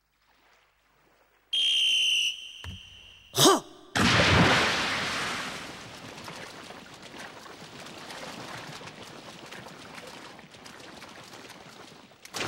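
A whistle blows for about a second to start a swimming race, a brief sharp sound follows, then a loud splash as a swimmer dives into the pool, settling into the steady churn and splashing of fast swimming.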